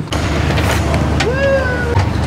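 A short laugh, then a steady low rumble, with a brief voice-like sound that rises and then holds about a second and a half in.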